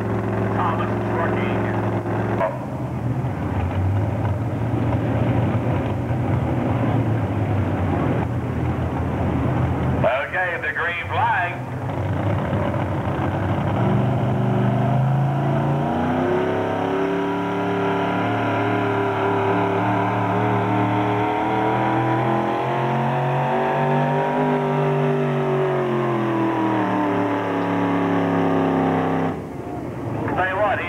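Supercharged engine of a modified 4x4 pulling truck. It runs steadily at first, then from about fourteen seconds in it revs up and holds high revs under load through a long pull, its pitch rising and falling.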